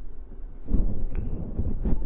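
Low rumbling noise of wind buffeting the microphone, growing louder about two-thirds of a second in, with a couple of faint ticks.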